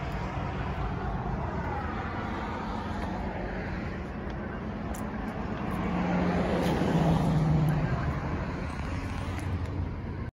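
Steady outdoor road-traffic noise, with a vehicle passing and growing louder about six to eight seconds in.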